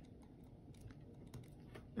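Faint, scattered ticks and scratches of a ballpoint pen writing on paper.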